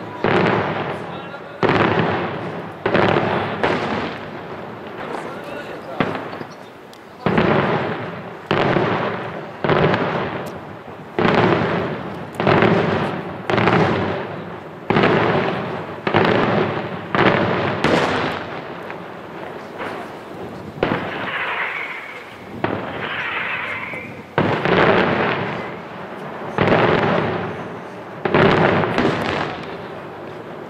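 Daytime aerial fireworks: shells bursting overhead in a steady run, a loud bang about every second and a half, each dying away in a rolling echo.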